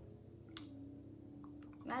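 Quiet pause with a single sharp click about half a second in and a faint, steady closed-mouth hum held through it, ending as a spoken word begins.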